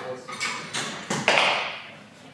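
Handling noise from a mirrorless camera being shaken side to side by hand: a run of knocks and brushing bursts, the loudest just past halfway, with the loosely seated lens and adapter knocking on the mount.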